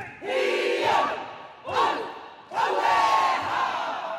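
A large kapa haka group shouting a chant in unison: three loud calls, the last one the longest.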